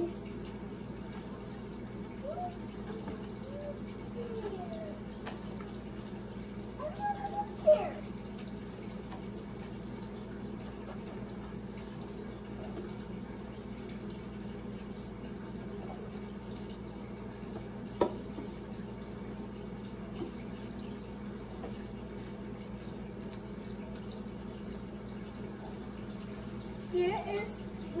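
Steady room hiss with a constant low hum, under faint handling noises as a cardboard gift box is opened and a cloth dust bag is lifted out. One sharp click comes about two-thirds of the way through.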